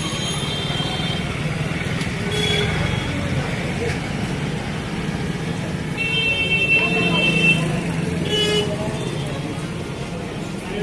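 Busy street ambience: a steady wash of traffic with vehicle horns tooting several times, the longest blast about six seconds in, over people talking in the background.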